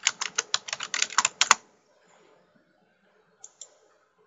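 Typing on a computer keyboard: a quick run of keystrokes that stops about a second and a half in, followed by two faint clicks near the end.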